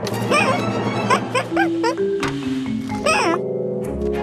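Cartoon background music with held notes, over a series of short, squeaky up-and-down gliding vocal sounds from a small cartoon creature.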